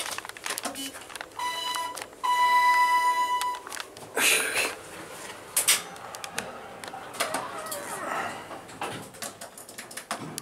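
Two electronic beeps from a ThyssenKrupp traction elevator car's fixtures: a short steady tone, then a longer, louder one a moment later. Several clicks and knocks follow.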